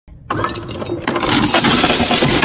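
Steel 3/8-inch anchor chain running out fast through a windlass chain wheel made for 5/16 chain, a loud metallic rattle that starts just after the beginning and grows louder from about a second in. The chain is too big to seat in the wheel's pockets and jumps out of the chain wheel as it runs.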